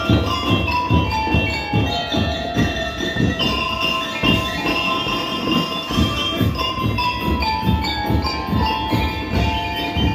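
A school drum and lyre corps playing: stand-mounted bell lyres, mallet-struck metal bars ringing out the melody, over a steady beat of bass drum and other drums at about two to three strokes a second.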